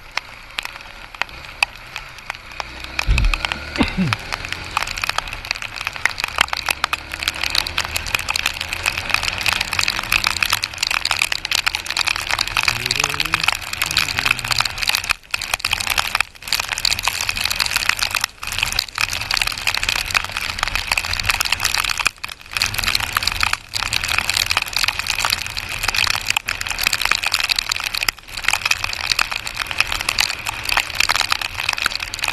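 Rain pelting the camera's microphone during a motorcycle ride: a dense, loud crackle over a hiss of wind and spray. The motorcycle's engine runs low underneath, its pitch shifting up and down a few times.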